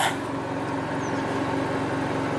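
Toy hauler's onboard generator running at a steady, even-pitched hum.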